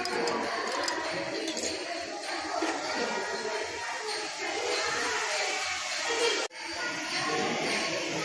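Devotional bhajan-kirtan singing by a group of voices with jingling percussion like a tambourine or small bells. It breaks off for an instant about six and a half seconds in, then carries on.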